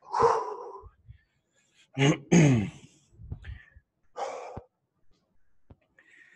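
A man breathing out hard while doing lunges, with a throat-clear about two seconds in and another heavy exhale about four seconds in.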